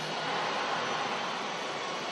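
Steady ambient rushing noise with no distinct events, like the background of a busy building entrance.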